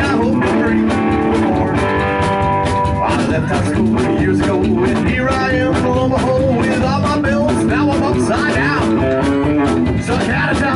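A live band playing a slow song: electric guitar, upright double bass and drums.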